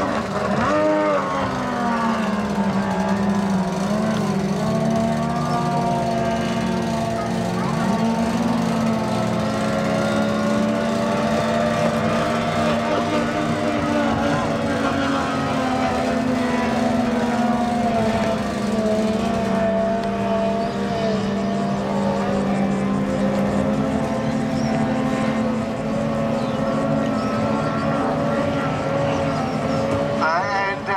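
Outboard motors of 850cc-class race boats running flat out: a steady high-revving drone, its pitch bending about a second in and then drifting gently as the boats run on.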